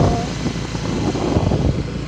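Wind rushing over the microphone together with the running engine and road noise of a motorbike being ridden, a steady loud rumble.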